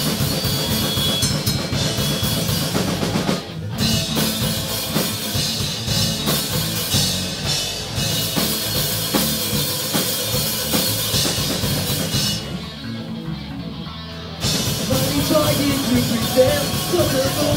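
A live punk-rock band plays an instrumental passage on electric guitars, electric bass and drum kit. The sound dips briefly about three seconds in. Near the end the band drops to a quieter, duller stretch for about two seconds, then comes back in at full volume.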